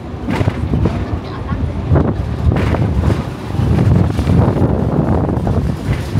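A Hong Kong double-decker tram running along its rails, a loud low rumble heard from the upper deck, with wind on the microphone.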